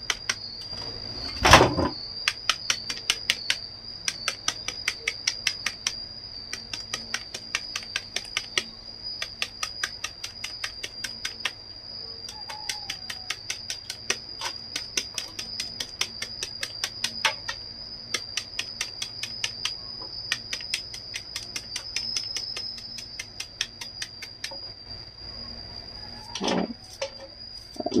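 Kitchen knife chopping a fresh bamboo shoot held in the hand, with quick, even strikes, several a second, that cut it into thin slivers. One heavier knock comes about a second and a half in.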